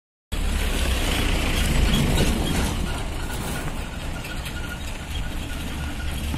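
A small pickup truck's engine and tyres on a dirt road as it drives past, a steady low rumble that cuts in abruptly and is loudest about two seconds in.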